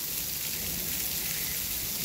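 Steady hiss of falling and splashing water, like spray or rain pattering on wet pavement.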